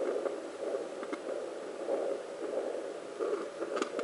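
Handheld fetal doppler (Sonotech Pro) playing an uneven, muffled whooshing noise through its speaker as the ultrasound probe is moved across the pregnant abdomen, away from the baby's heartbeat.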